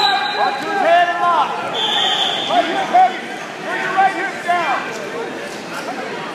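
Several voices shouting and calling out over one another in a large hall, with a brief high steady tone about two seconds in.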